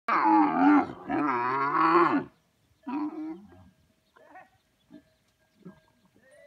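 Dromedary camels mating, with a camel giving loud, wavering, pitched calls: two long calls in the first two seconds, a shorter one about three seconds in, then a few faint grunts.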